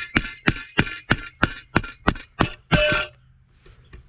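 A hammer beating on the plunger of a Yard Butler sod plug tool to knock the cut soil plug out of its tube: about three ringing metal-on-metal strikes a second, stopping about three seconds in.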